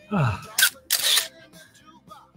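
A person sighs, the voice falling in pitch, then breathes out hard twice, winded after a hard leg exercise.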